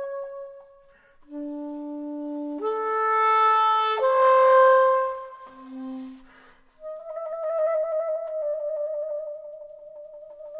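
Solo soprano saxophone playing a slow contemporary line of separate notes with short breaks, leaping between low and middle register. Near the end it holds a long note that flickers rapidly, the bisbigliando (timbral trill) effect the piece is built on.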